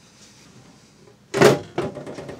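The steel side cover of a desktop computer case shutting with one loud clunk about one and a half seconds in, followed by a couple of small clicks. Before it there is only faint room tone.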